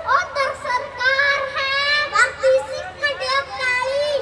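Boys' voices reciting a Punjabi poem in a chanted, sing-song delivery, with long held notes, through stage microphones.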